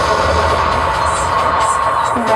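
Electronic music from a live laptop set: a dense, steady wash of noisy sound with a held mid-pitched tone and a low bass rumble, without a clear beat.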